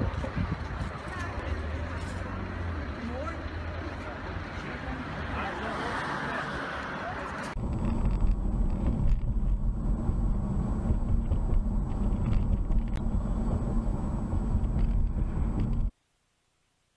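Outdoor street noise with people's voices in the background. About seven and a half seconds in, it cuts abruptly to the steady low rumble of road noise inside a car driving on a highway, recorded by a dashcam.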